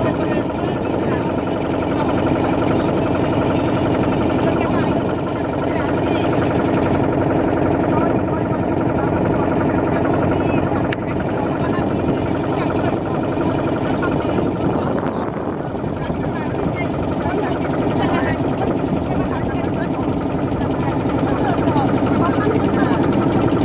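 Motorboat engine running steadily while the boat is under way, a constant drone, with people's voices faint beneath it.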